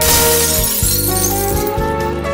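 Background music with a glass-shattering crash right at the start that fades away over about a second.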